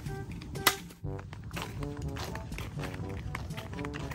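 Background music, with one sharp chop less than a second in: a machete striking a green bamboo stalk.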